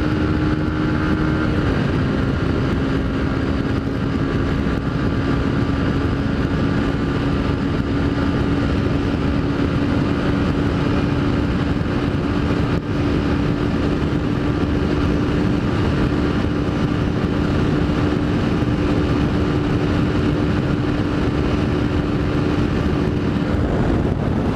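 Honda CG Titan's single-cylinder four-stroke engine running hard at high revs near top speed, about 125 km/h. It makes a steady drone whose pitch dips slightly about two seconds in and then creeps up slowly as the bike gains speed, with wind rushing over the helmet microphone.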